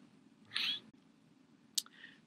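A short, faint, breathy intake with a slight squeak about half a second in, then a single small click near the end: a lecturer's breath and mouth click between sentences.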